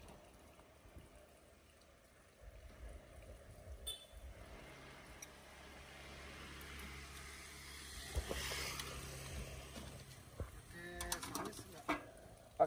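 Faint low drone of a motorcycle engine passing along the street, growing louder to about eight or nine seconds in and then fading. A light clink about four seconds in.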